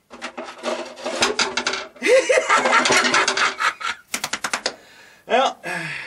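A sharp knife sawing and ripping through a snare drum head in quick rasping strokes, then a few short sharp scratches about four seconds in. Both the top and bottom heads of the drum are cut through.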